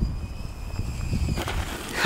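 Zipline pulley running down a climbing rope with a steady high whine, and a louder rushing noise in the last half second as the rider comes in.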